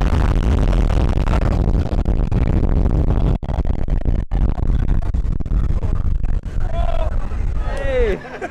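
Ride car of Radiator Springs Racers speeding along the outdoor race track: a loud, steady rumble with wind buffeting the microphone, briefly cutting out twice midway. A voice calls out near the end.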